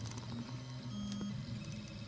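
Stepper motors of a Reach 3D printer running through a print, giving low, steady tones that jump to a new pitch every fraction of a second as the head and bed change moves.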